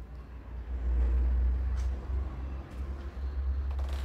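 A low, steady rumble that grows louder about a second in.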